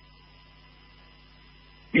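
Faint, steady electrical hum with a thin, high, steady tone above it: background hum in the recording.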